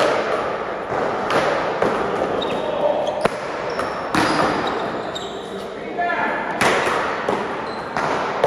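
Paddleball rally: a rubber ball struck by solid paddles and bouncing off the wall and floor, a string of sharp, irregularly spaced smacks that echo in a large hall.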